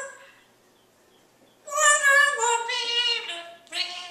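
African grey parrot vocalising: after a short quiet spell, a pitched, singing-like call that steps up and down for about a second and a half, then a shorter note near the end.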